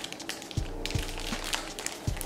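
Plastic bags crinkling as they are handled, a scatter of small crackles, over quiet background music.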